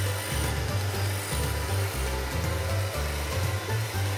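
Robot mop running steadily across the floor, with its mopping tank filled with water and floor cleaner, under background music with a stepping bass line.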